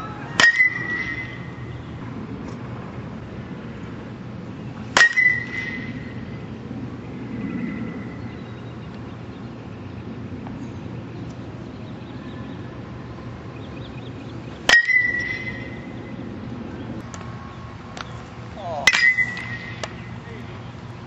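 Metal baseball bat hitting pitched balls four times, several seconds apart: each contact is a sharp ping that rings briefly.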